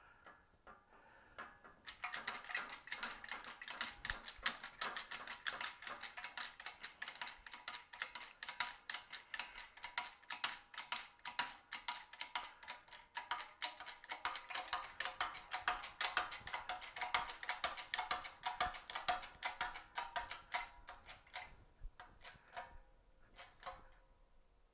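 A 20-ton hydraulic shop press is being hand-pumped, giving a long run of rapid mechanical clicking and ticking. It starts about two seconds in, swells and fades with each pump stroke, and stops near the end. The ram is pressing a 16-gauge sheet-metal disc cold into a cup-forming die.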